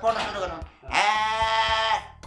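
A man's voice over background music with a steady beat: a short vocal phrase, then a long held note from about a second in.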